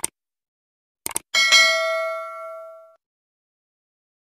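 Sound effect for an animated subscribe button: a mouse click, a quick double click about a second in, then a bright bell ding that rings out and fades over about a second and a half.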